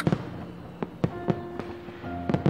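Aerial fireworks bursting overhead: about half a dozen sharp bangs spread unevenly over two seconds.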